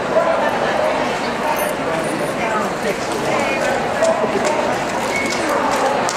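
Many people's voices chattering in a large hall, with dogs barking and yipping now and then.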